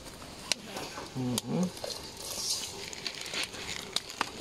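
A metal spoon tapping and scraping against a steel camp pot as chunks of chaga are tipped into the water over the campfire, with two sharp clinks in the first second and a half and a soft hiss in the middle.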